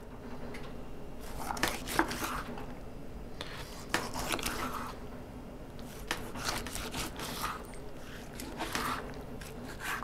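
Outdoor Edge butcher knife slicing through a raw elk heart: soft sawing and scraping strokes through the meat, with the blade ticking against the wooden cutting board a few times.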